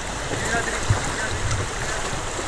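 Fast river current running close beside a canoe, a steady rushing wash of water.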